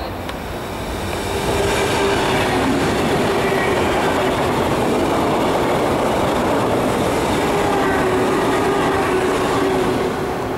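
SBB ICN (RABe 500) tilting electric train passing through a station at speed: a loud, steady rush of wheels on rail that swells about a second and a half in and holds, with faint whining tones over it.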